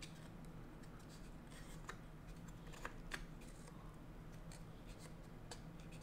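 Wooden slats of a wooden puzzle box sliding and being handled: light wood-on-wood rubbing with a few faint, irregular clicks.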